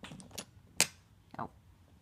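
Wooden toy train carriages knocking on the track, with a sharp click a little under a second in as their magnetic couplings snap together.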